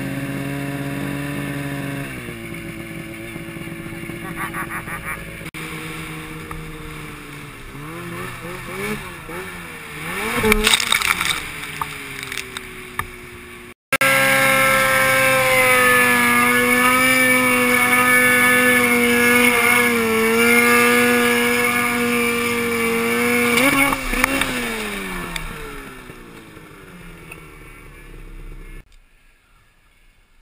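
Snowmobile engine running, with revs rising and falling. After a sudden break it runs strong and steady at speed, then drops in pitch and fades away near the end as the sled slows.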